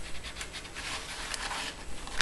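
Cardstock being handled and pressed by hand: paper rustling and rubbing, with a few light taps.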